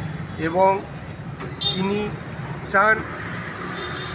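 A man's voice in short, broken fragments over steady background road-traffic noise.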